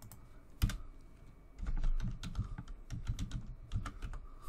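Computer keyboard typing: a single key click, then a quick, irregular run of keystrokes through the second half.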